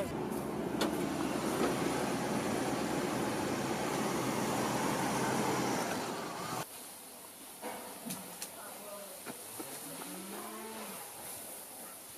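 Engine noise from a square-body Chevrolet pickup: a steady, rough rumble lasting about six and a half seconds, which cuts off abruptly. It gives way to a much quieter stretch with faint voices.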